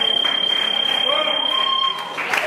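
Electronic match timer buzzer sounding one steady high beep for about two seconds, the end-of-time signal for the bout, over crowd chatter.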